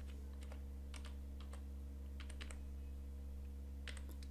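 Computer keyboard typing: a handful of faint, scattered keystrokes over a steady low electrical hum.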